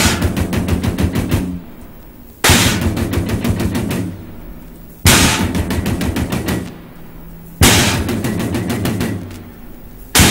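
Experimental music: a burst of rapid percussive rattling over a low droning tone, starting sharply and fading over about a second and a half, repeated four times about every two and a half seconds.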